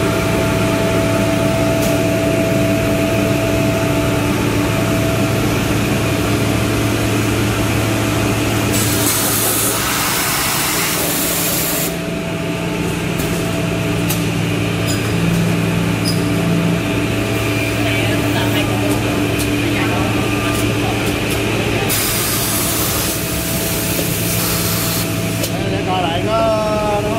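Holztek PRO-700A edge banding machine running with a steady multi-tone motor hum, joined by two spells of loud hissing noise, about a third of the way in and again near the end.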